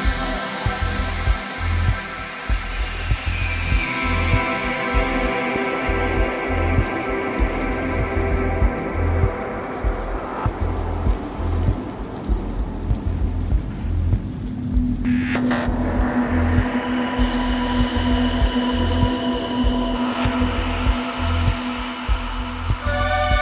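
Downtempo psychill electronic music: a steady pulsing bass beat under sustained synth pads. Around the middle the higher layers thin out, then a sudden swell brings in a deep held tone, and brighter synth notes return on top.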